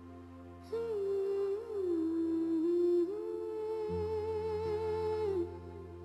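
Background score: a slow, wordless hummed melody with gentle pitch glides over a low sustained drone. The melody enters about a second in and drops away near the end, leaving the drone.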